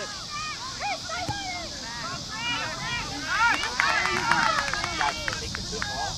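Several distant voices shouting and calling across an open soccer field, overlapping, over a steady high hiss, with a few sharp clicks in the middle.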